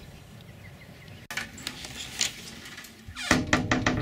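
Camcorder handling noise: a low hiss, then in the last second a quick run of clicks and knocks with low thumps.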